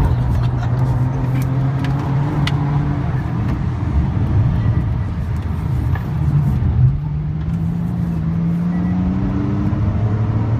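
Car engine heard from inside the cabin, running steadily at low speed, then rising in pitch as the car accelerates from about seven seconds in, over a steady road noise.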